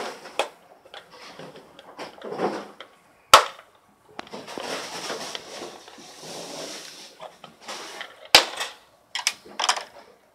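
Plastic snap-fit clips of a Philips airfryer's knob-side trim panel being pried off by hand: two loud sharp snaps, about three seconds in and again about eight seconds in, with plastic scraping and handling between them and a few smaller clicks near the end.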